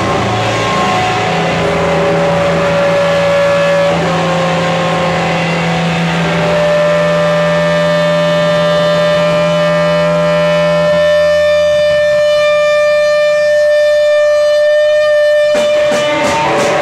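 Amplified electric guitars and bass holding long, droning notes with no drums, a steady high tone ringing over them; the low note drops away about eleven seconds in and the sound cuts off suddenly just before the end.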